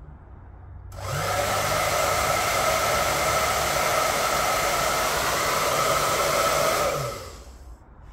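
Anko hair dryer switched on through a smart plug. About a second in it starts with a steady blowing rush and its motor spinning up, runs for about six seconds, then cuts out as the plug switches off, its motor winding down.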